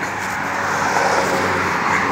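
Road traffic on a city street: a steady rush of passing-car noise with a low engine hum.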